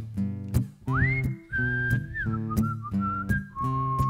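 Acoustic guitar strummed in a steady rhythm while a person whistles a melody that comes in about a second in, sliding up to a high note and then stepping down through held notes.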